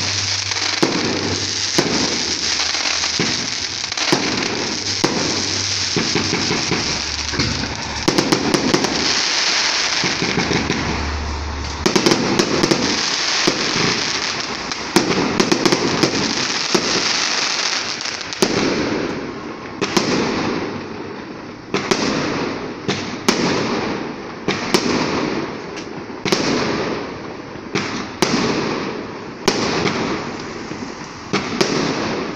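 Fireworks display, aerial shells bursting overhead with dense continuous crackling, then about two-thirds of the way through giving way to separate sharp bangs about one a second, each with a short reverberant tail.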